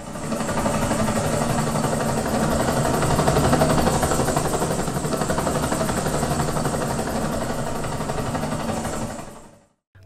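Dolby Atmos helicopter demo: a helicopter's rotor and engine sound, fading in and then fading out near the end.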